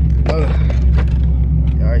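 A C7 Corvette's V8 idling with a steady, deep rumble, under short bits of speech.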